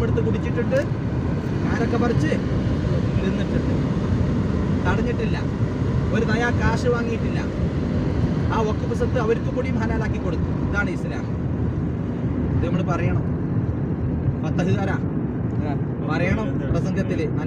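Steady road and engine noise inside a moving car's cabin, with a person's voice talking now and then.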